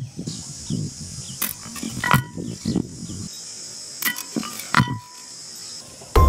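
Hands handling bamboo sticks and a stone disc while setting a deadfall trap on sandy ground: scraping and rustling with about four sharp knocks, some ringing briefly. A steady high insect buzz runs underneath.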